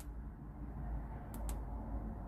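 Two quick, faint clicks from the Wurkkos HD20 torch's electronic side switch being pressed, about a second and a half in, over a low steady hum.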